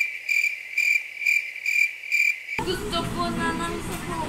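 Crickets chirping as a stock sound effect: an even run of short, high chirps, about three a second, that cuts off suddenly a little over two and a half seconds in.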